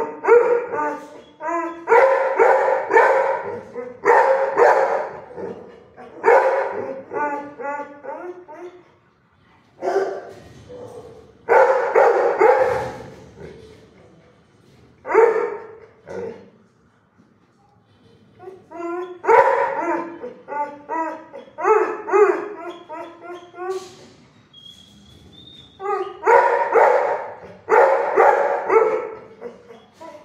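Several dogs barking off-camera in a hard-walled shelter kennel, in bouts of rapid barks broken by pauses of one to three seconds.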